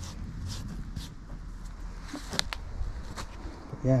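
Irregular light scuffs, rustles and clicks from movement over soil and camera handling, over a low rumble, with one sharper click a little past halfway.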